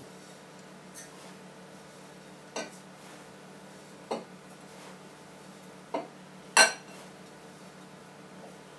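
Five light clinks and knocks of a small glass cup against a copper distiller column as dried lavender buds are scooped into it, spaced a second or so apart, the loudest near the end. A faint steady hum lies underneath.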